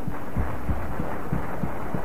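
Soft low thumps, evenly spaced at about three a second, under a steady rushing noise, as a held musical chord cuts off at the start.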